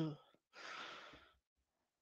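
A woman's short, soft breathy sigh into a close microphone, about half a second in, just after the end of a murmured "mm-hmm".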